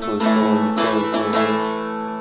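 Long-neck bağlama (uzun sap saz) played with a plectrum: a chord is struck several times in quick succession and then left ringing, fading out near the end.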